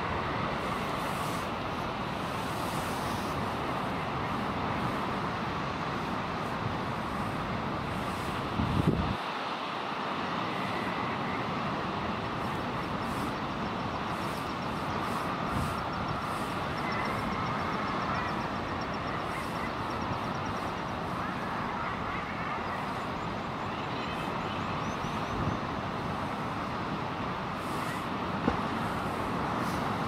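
Steady din of a common guillemot colony, the birds' massed calls blended with wind and sea noise. There is a single low thump about nine seconds in.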